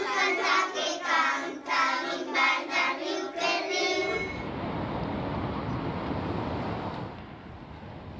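A group of young children singing together, ending about halfway through; then a steady traffic-like street noise takes over.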